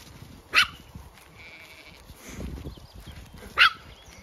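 Two short, sharp animal calls about three seconds apart, from the sheep and dogs on the track.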